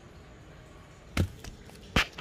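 Two sharp knocks a little under a second apart, the second the louder.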